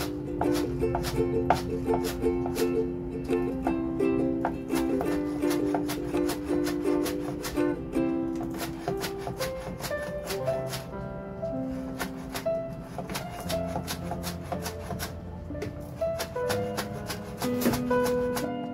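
Background music with a melody, over a kitchen knife chopping spring onion tops on a plastic cutting board in quick, even taps.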